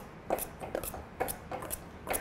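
Metal utensils clicking and scraping irregularly against stainless steel mixing bowls as margarine is cut into flour for a pie crust.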